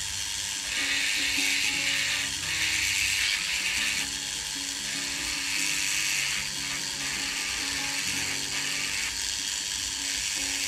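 Small rotary carving tool with a flat-tip diamond bit grinding into the edge of a wooden fin, a steady high whine and hiss that swells and eases as the bit is pressed in and lifted off. Background music plays underneath.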